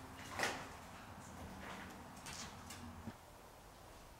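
Faint footsteps and scuffs on a debris-littered floor, with a sharper knock or crunch about half a second in and a few lighter ones after.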